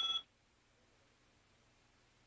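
A brief ringing tone from the cartoon soundtrack that cuts off about a quarter second in, followed by near silence.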